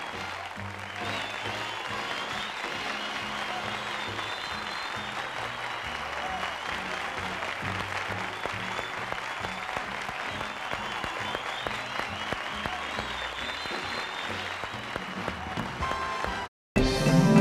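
A theatre audience applauding steadily, with music playing underneath.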